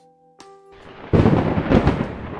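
Thunder sound effect with music: after a near-silent start, a rumble swells up and runs loud from about a second in.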